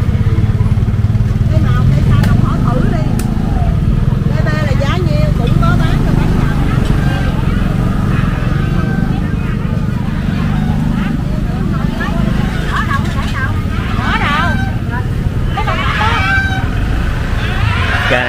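Busy outdoor market lane: scattered chatter of vendors and shoppers over a steady low rumble of motorbikes riding slowly between the stalls.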